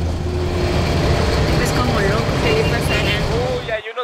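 Steady low rumble of a moving bus heard inside its cabin, with faint passenger voices; it cuts off abruptly near the end.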